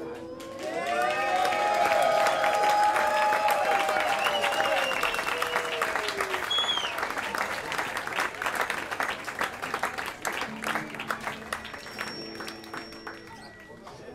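A small bar audience applauding and cheering as the song ends. The clapping starts about half a second in, with voices whooping over the first few seconds and a short whistle about six and a half seconds in, and it thins out near the end.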